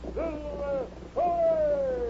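A man's voice giving two drawn-out shouted calls, the second long and falling in pitch: the Lone Ranger's closing cry to his horse, "Hi-yo Silver, away!"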